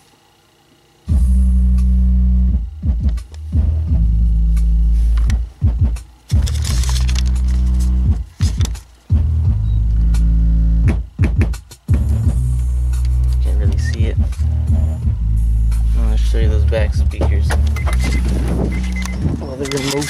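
Music with heavy bass played loud through a car stereo, a Pioneer DEH-15UB head unit with new speakers, heard inside the car. It starts suddenly about a second in, and the bass drops out briefly several times.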